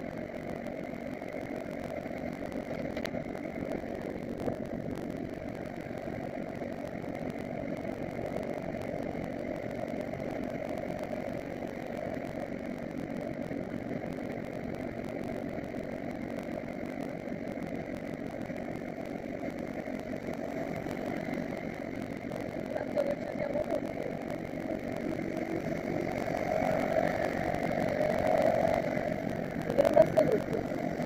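Honda CBR1000RR's inline-four motorcycle engine running steadily at low speed, heard from a helmet-mounted camera along with wind and road noise. It grows louder in the last few seconds.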